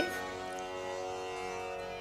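Steady tanpura drone sounding on its own, the sustained pitch reference (sruti) that accompanies Carnatic singing.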